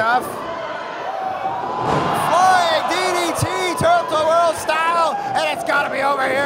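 Wrestlers' bodies slamming onto the ring canvas several times, the first just after a leap from the top rope, among loud shouting voices.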